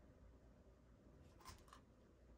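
Near silence: room tone, with a faint brief scrape or click about one and a half seconds in.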